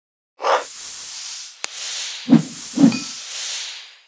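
Sound effects for an animated logo intro. A whoosh starts about half a second in and runs on as a long airy hiss, with a short click and then two soft low thumps in the second half, fading out at the end.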